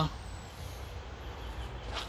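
Low, steady background rumble.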